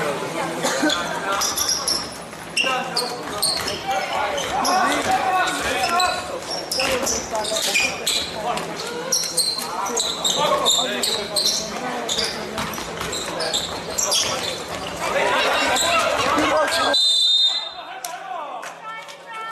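A basketball bouncing on a hardwood gym floor, mixed with voices of players and spectators. The sound drops away abruptly near the end.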